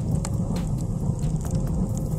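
Firewood burning in a cast-iron wood stove's firebox: a steady low roar with sharp crackles every so often.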